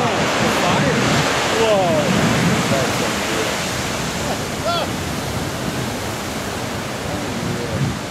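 Big ocean surf breaking on coastal rocks: a heavy, steady rush of whitewater that slowly eases after the wave's burst.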